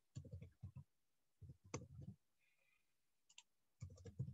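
Faint computer keyboard typing: three short runs of keystroke clicks with brief pauses between them.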